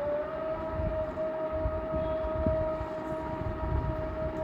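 A long, steady siren-like tone with overtones, rising a little in pitch at first and then held at one pitch, over a low rumble.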